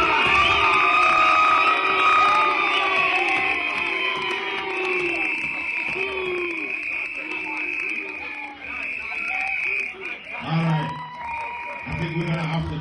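A crowd cheering and shouting in answer to the MC's call for a response, with a steady high-pitched scream or whistle running through it. The noise is loudest at the start and tails off towards the end.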